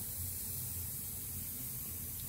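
Steady hiss of compressed air in the filling machines' pneumatic lines, with a low hum underneath.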